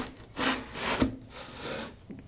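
ASUS Chromebook CX9 being set and shifted on the packaging's cardboard laptop stand: a few short scraping rubs of laptop against cardboard, with a light knock about a second in.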